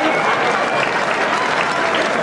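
An audience applauding steadily, with crowd voices mixed in, in response to the punchline of a joke.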